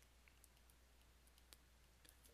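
Near silence: a faint low hum with a few scattered faint clicks of a stylus tapping on a pen tablet as it writes.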